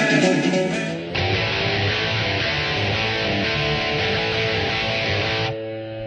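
Electric guitar music, with an abrupt cut to a different passage about a second in and another change just before the end.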